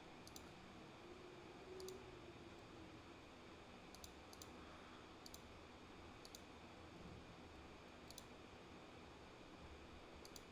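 Near silence with faint, scattered clicks of a computer pointing device, about eight spread across the stretch, a few coming in quick pairs.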